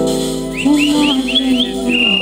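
Live reggae played on acoustic and electric guitars, with a chord struck at the start and a held sung note beneath. Over it comes a run of five quick rising whistled notes, then one long high whistled note near the end.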